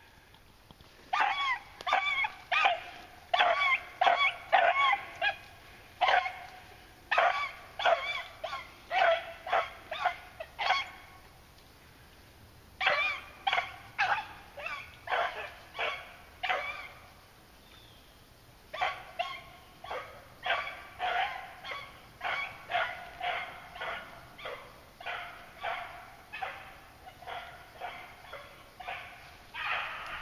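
Beagle hounds baying on the trail of a freshly jumped rabbit. Short, high calls come in quick runs, two or three a second, with two brief breaks where they fall quiet before taking up the line again.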